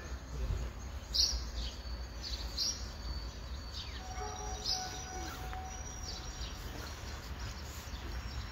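Birds chirping: several short, high calls scattered every second or so, over a steady low rumble.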